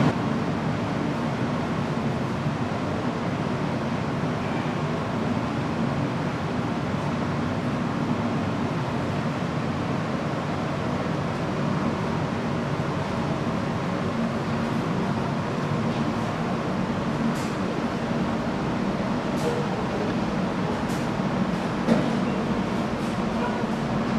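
Steady, even background rumble of a workshop room, with a few faint clicks in the last third and one slightly louder knock near the end.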